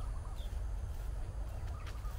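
Birds calling: a short high chirp about half a second in and short mid-pitched calls at the start and near the end, over a steady low rumble.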